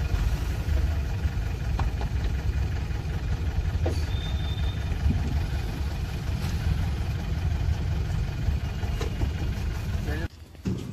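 Steady low rumble of a car idling, heard from inside the cabin while standing in traffic.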